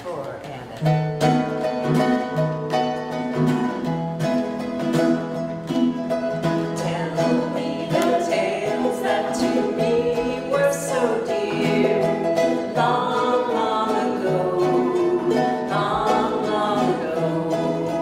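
A trio of ukuleles strumming chords together in a live acoustic performance, with a woman singing the melody over them. The music gets louder about a second in.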